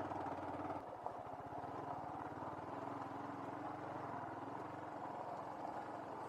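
Motorcycle engine running steadily at low speed while being ridden, heard fairly quietly; its level dips slightly about a second in.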